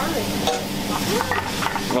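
Shrimp frying with garlic in butter and oil in a small pan over a gas flame, sizzling steadily.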